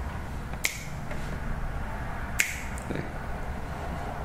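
Two sharp finger snaps, one a little after the start and the second about a second and three quarters later, over a faint low room hum.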